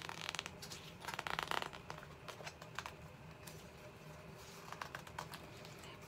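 Paper pages of a large picture book being handled and turned, rustling twice within the first two seconds, then a few faint scrapes and taps.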